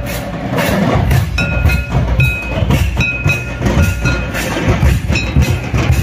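Madal hand drums beaten in a fast, steady dance rhythm, with a high ringing note recurring about once a second.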